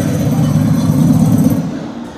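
A loud, rough rumbling noise that cuts off about one and a half seconds in.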